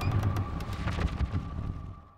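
Horror trailer sound design: a low rumble with rapid crackling clicks and a held high tone, dying away near the end.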